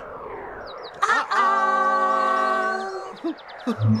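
A loud held chord of several steady tones, like a horn, lasting about two seconds from about a second in, then fading out.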